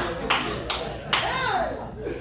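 A few slow, separate hand claps, about two a second, from a listener in a seated audience, followed by a short vocal exclamation that rises and falls in pitch.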